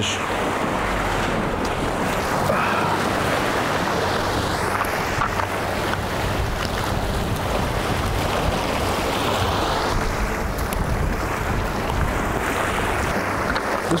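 Surf washing against the rocks of a jetty, a steady rush of waves, with wind buffeting the microphone.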